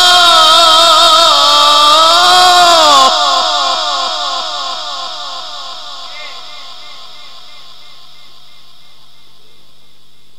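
Male Quran reciter holding a long drawn-out note in Egyptian tilawa style, gliding up near the end and breaking off about three seconds in. A strong echo repeats the last phrase over and over, fading away over the next five seconds.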